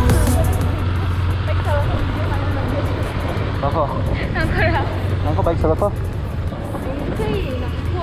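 A motorcycle riding along a rough road: steady low engine and wind noise, with short snatches of voices several times in the middle.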